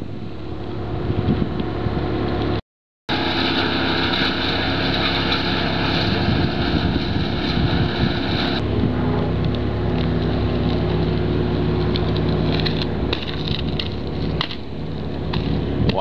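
A motor engine running steadily, with wind noise on the microphone. The sound cuts out briefly about three seconds in, and a higher whine over the engine stops abruptly about eight and a half seconds in.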